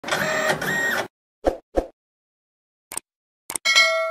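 Sound effects for an animated logo: about a second of noisy swishing, two short knocks, a faint click, then a bright ringing ding near the end that fades away.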